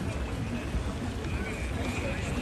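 Beach ambience: wind rumbling on the microphone, with faint chatter of many people.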